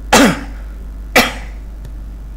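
A man coughs twice, short and sharp, about a second apart.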